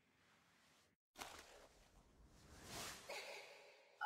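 Near silence: room tone, with a faint breathy hiss swelling in the second half.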